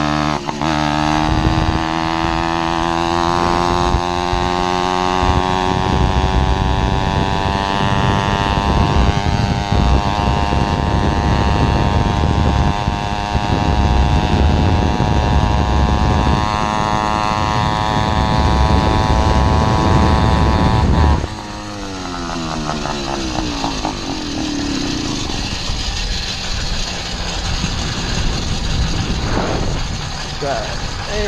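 An 80cc two-stroke motorized-bicycle engine (Zeda PK80 kit) running under load as the bike is ridden, its pitch climbing in the first few seconds and then held high, with heavy wind rumble on the microphone. About two-thirds of the way in it suddenly gets quieter and the pitch falls off, then climbs again near the end.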